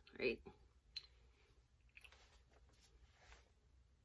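A few faint sharp clicks about one and two seconds in, from a metal chain necklace with a pendant being handled at the neck; otherwise near silence.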